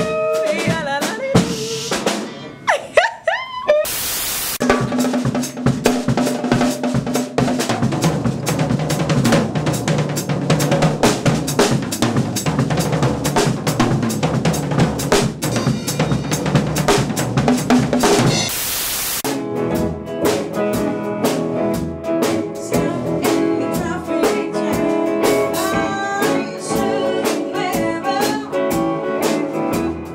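A small band playing together in a rehearsal room: a woman singing at first, then a drum kit with bass and guitar, the drums prominent. Two loud crashes, about four seconds in and again around eighteen seconds.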